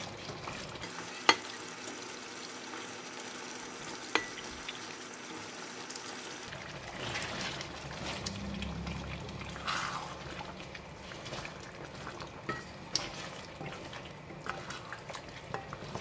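Thick mutton curry simmering in a stainless steel pan while a wooden spoon stirs it, with two sharp knocks of the spoon against the pan in the first few seconds. About six seconds in, cubed raw potatoes are tipped in and stirred through, with scattered clicks of the spoon on the pan.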